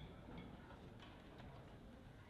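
Near silence: quiet hall room tone with a few faint, scattered clicks.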